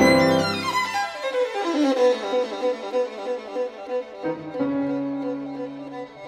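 Violin music: a loud opening chord, then a quick falling run of notes and rapid repeated notes, then from about four seconds in a long held low note.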